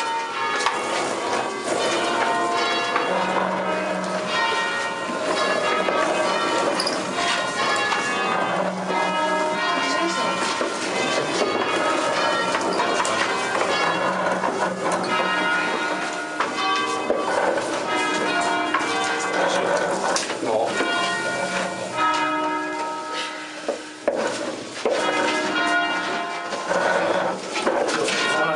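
A ring of five rope-rung church bells tuned to E-flat (founded by Barigozzi 1890, Ottolina 1927 and De Poli 1950), pulled by hand ropes and ringing together in a festive peal, the strikes coming fast and overlapping so the tones blend into one continuous clangour.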